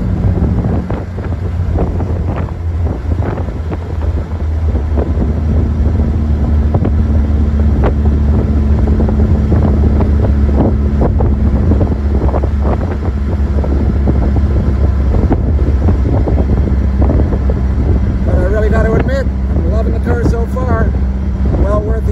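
1951 MG TD's 1250 cc XPAG four-cylinder engine running at road speed, with wind noise on the microphone. The engine note rises a few seconds in, holds, and drops back about two thirds of the way through.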